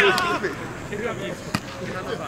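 Several calcio storico players shouting and calling out to each other on the training field, their voices overlapping, with a single sharp knock about a second and a half in.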